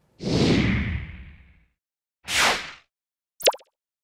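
Graphic transition sound effects: a long whoosh that fades out over about a second and a half, a shorter second whoosh about two seconds in, then a brief sharp blip near the end.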